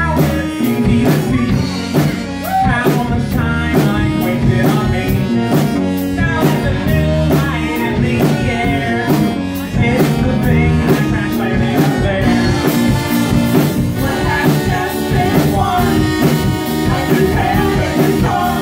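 A small rock band playing live: electric bass, keyboard and drum kit, with a steady hi-hat beat. About twelve seconds in, the drums open up into a fuller cymbal wash.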